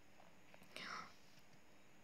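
Near silence: room tone, with a faint breath drawn by the speaker just under a second in.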